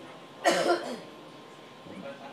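A person coughing once, loud and short, about half a second in, over faint room chatter.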